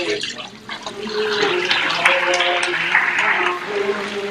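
Water sloshing and splashing in a baptistry pool as a person is raised from immersion and wades through waist-deep water, with voices underneath.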